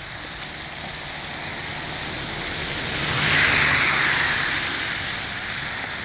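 A car passing along a slushy, snow-covered street: its tyre and engine noise swells to its loudest about three and a half seconds in, then fades away.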